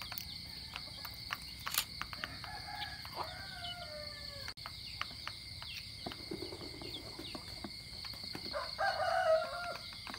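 Roosters crowing twice: a fainter crow about three seconds in and a louder one near the end. Scattered light clicks come from the chickens pecking at their feed.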